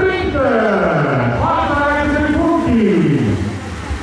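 A man's voice calling out in long drawn-out cries, each sliding down in pitch, as the race finishes.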